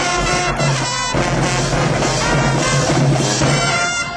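High school marching band playing loudly in the stands: a brass section of trumpets and trombones over low bass notes and drums. The band cuts off together at the very end.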